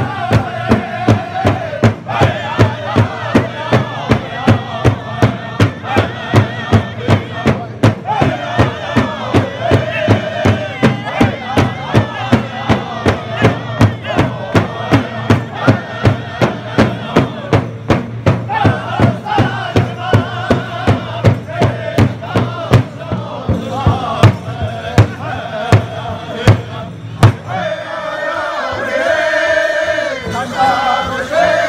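Powwow drum group singing an honor song together while beating a large hide-covered drum with padded sticks, a steady beat of about three strokes a second. The drumming stops about three seconds before the end while the voices carry on.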